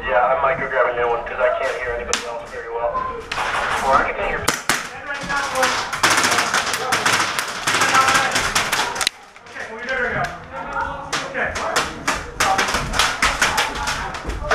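Airsoft guns firing in rapid strings of sharp cracks and clicks, densest from a few seconds in until about nine seconds, and again near the end, with players shouting over the gunfire.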